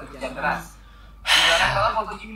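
A man's loud, breathy gasp of laughter, starting a little past halfway and lasting about two-thirds of a second, after a short stretch of low talk.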